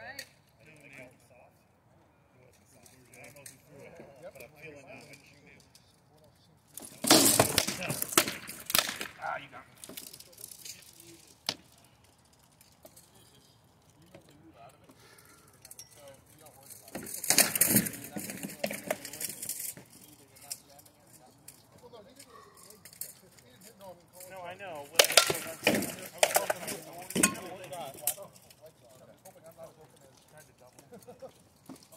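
Rattan swords striking shields, helms and armour in SCA heavy combat, coming in three flurries of sharp cracks and clanks: about seven seconds in, around seventeen seconds, and near twenty-five seconds.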